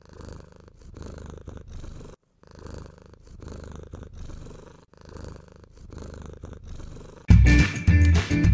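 Domestic cat purring right at the microphone: a low rumble that swells and eases with each breath, with a short break about two seconds in. Loud background music cuts back in near the end.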